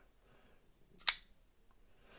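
Titanium framelock flipper knife (Reate K1) flicked open: a single sharp click about a second in as the blade breaks past its stiff detent and snaps open against the stop.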